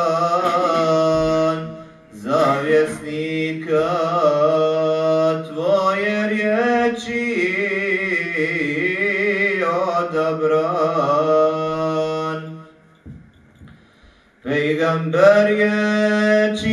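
A single male voice chanting an unaccompanied Islamic devotional melody in long, ornamented notes. It breaks off briefly about two seconds in, then again for a longer pause near the end before it resumes.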